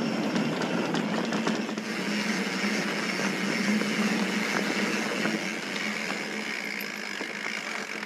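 Mountain bike riding along a dry dirt trail: a steady rush of tyre and wind noise with light clicks and rattles from the bike.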